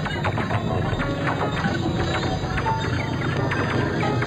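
Electroacoustic music: a dense, busy texture of clicks, knocks and short pitched fragments over a steady low drone.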